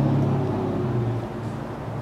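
A steady low mechanical hum, like a motor running, easing off slightly toward the end.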